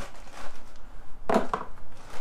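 Rummaging through a cardboard box of supplies: irregular rustling and light knocking of packaging and containers being handled.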